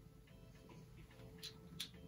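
Two sharp clicks from a small object being handled, about a second and a half and just under two seconds in, the second the louder, over faint, quiet music.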